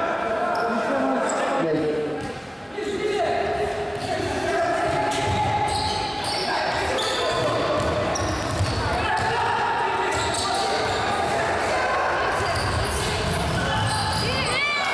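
Live futsal play in an echoing sports hall: the ball being kicked and bouncing on the wooden court, with players calling and shouting throughout.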